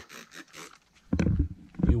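A handheld trigger spray bottle squirted a few times in quick succession, short hissing spritzes, in the first second. About a second in comes a brief loud vocal sound from the man.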